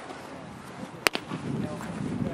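A baseball smacks into a leather glove: one sharp pop about a second in, with a faint tick just after.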